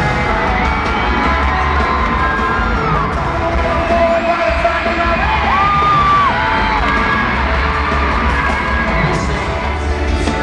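Concert crowd of fans screaming and cheering, many high-pitched screams overlapping and held, over a steady low rumble from the sound system.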